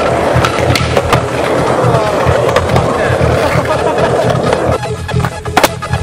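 Skateboard wheels rolling on concrete until close to five seconds in, then a sharp clack of the board, over music with a steady beat.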